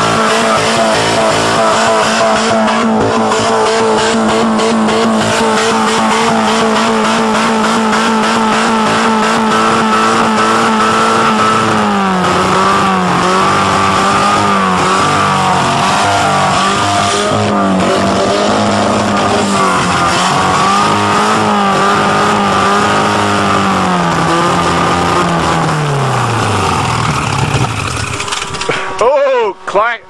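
Geo car engine run flat out while swallowing coins and gravel fed into its intake. It holds a steady high rev, then surges up and down, and sags and winds down until it dies just before the end. The debris is wrecking it: afterwards it has no compression and the owners reckon it needs a valve job.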